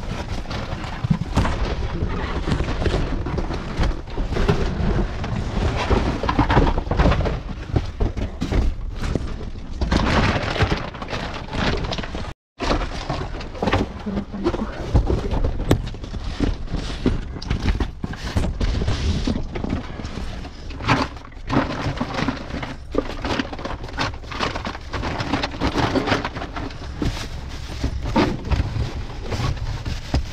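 Cardboard boxes and plastic bags being pulled about and rummaged through by hand inside a metal dumpster: steady crinkling and rustling broken by frequent knocks and thuds.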